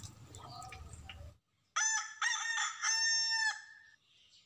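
Faint background noise cuts off just over a second in. After a brief silence a rooster crows once, a loud call of three or four linked syllables lasting under two seconds.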